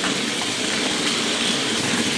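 Crush Gear battle cars' small battery-powered motors and gearboxes running steadily as two cars drive and push against each other in a plastic arena.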